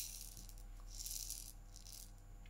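A hand rattle shaken softly, a faint dry shaking sound that trails off before the end.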